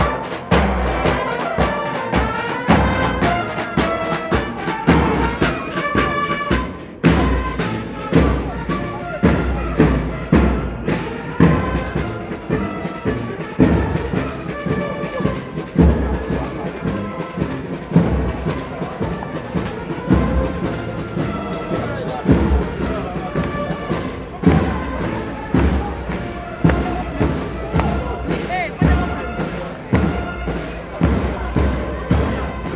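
Military marching band playing a brass tune (trumpets) over a steady bass-drum beat, with a brief break about seven seconds in.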